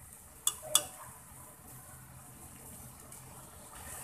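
Two sharp clicks of a steel spoon knocking against an aluminium wok about half a second in, as ground chilli is tipped in. Under them runs the faint, steady sizzle of wet onion and spice paste cooking in oil.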